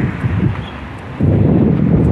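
Wind buffeting the microphone, a low rumble that gets suddenly louder a little past a second in.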